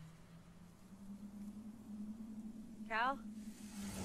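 A movie trailer's soundtrack: a low, steady drone that rises slightly in pitch about a second in, and a brief shouted call from a voice about three seconds in.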